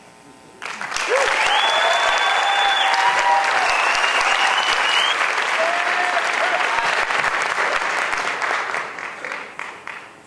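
A theatre audience applauding, with shrill whistles and whoops over the clapping. It breaks out about half a second in and dies away near the end.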